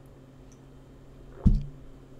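A single short, dull thump about one and a half seconds in, over a low steady hum.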